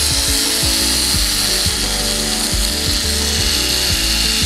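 Rotary tool spinning a 10 mm diamond cutting wheel, a steady high-pitched hiss, brought against the diecast metal car body to cut it.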